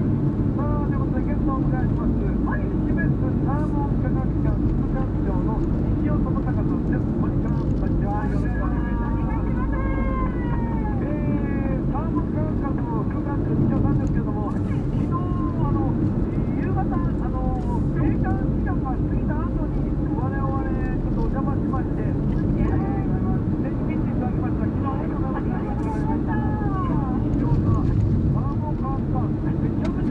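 Steady low engine and tyre rumble inside a moving car's cabin, with a radio talk programme playing over it.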